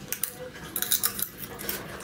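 A few light, sharp clicks and clinks of tableware at a table while food is eaten by hand, irregularly spaced with short gaps between them.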